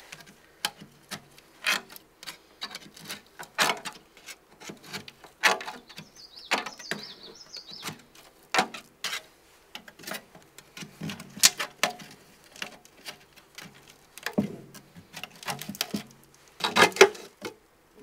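A hand tool prying and scraping around the lid of a metal bucket of old roofing tar, making irregular metallic clicks and scrapes as the lid is worked loose.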